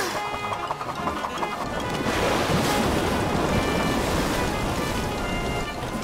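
Background music with a rushing sound effect of stormy sea waves that swells up about two seconds in.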